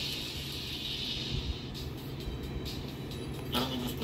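Soundtrack of a YouTube video's logo intro played by a PX6 Android car stereo through a small test speaker: a hissing whoosh that fades about 1.5 s in, over music.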